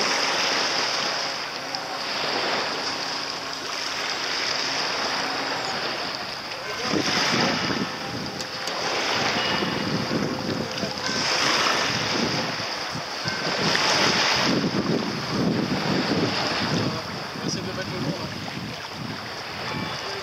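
Wind blowing on the microphone and small waves washing in, a steady rush that swells and falls back every second or two from about a third of the way in.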